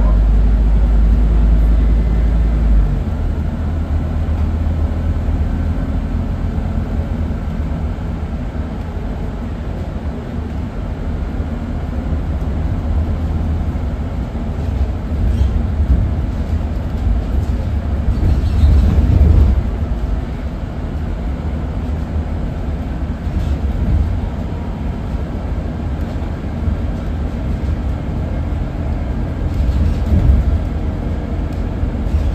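Inside a Scania N280UB CNG city bus on the move: the engine and drivetrain drone steadily under a low road rumble. A smooth, even hum gives way about three seconds in to a rougher rumble, which swells louder a little past halfway.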